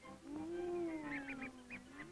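A cartoon vocal sound effect on an early-1930s soundtrack: one long cat-like wavering call that rises and falls in pitch, with a few short high squeaks in the middle.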